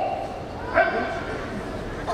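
Two short, high-pitched shouted calls from men in the judo hall, one right at the start and one just under a second in, over the arena's background murmur: shouts urging on the judoka as they close to grip.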